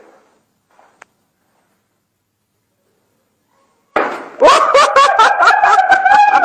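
Near silence, then about four seconds in a sudden loud smash as a stone slab breaks, followed at once by loud laughter and shouting.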